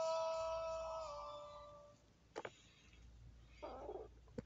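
A man's voice holding the last sung note of a song, fading out over about two seconds. Then two faint quick clicks and a brief soft rustle.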